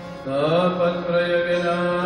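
Indian devotional music in the manner of a mantra chant: a steady drone under a gliding melodic line, with a new phrase coming in about a quarter second in.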